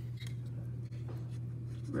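Faint scratching and small clicks of a wooden toothpick being worked into the plastic safety tab of a Ninja blender pitcher's handle, over a steady low hum.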